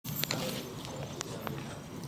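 Low murmur of a seated congregation in a large church hall, with a few light taps and clicks scattered through it.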